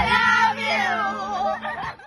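A woman's high, wavering voice sung into a microphone and played through a loudspeaker.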